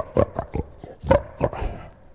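A quick string of short, sharp vocal yelps, bark-like, answering a call for the teeny boppers to scream out; they weaken near the end.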